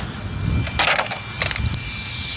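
RC car's hard plastic body shell being pulled off its chassis by hand: a short crackling scrape a little under a second in, then a smaller click.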